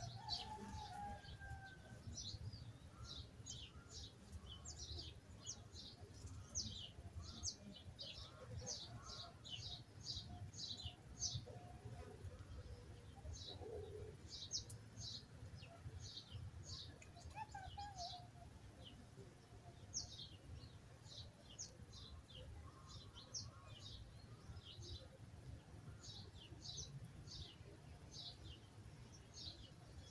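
Faint birdsong: many short, high chirps, each falling quickly in pitch, repeated in quick runs, over a faint low rumble.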